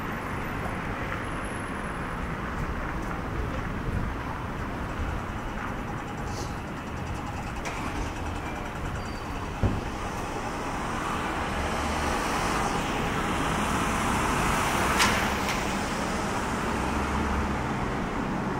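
City street traffic: cars running and passing through an intersection, swelling louder in the second half as vehicles pass close by. A single sharp click sounds about ten seconds in.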